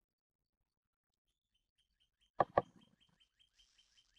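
Silence for about two seconds, then two clicks and a small bird chirping: a rapid run of short, high, falling chirps, about four a second.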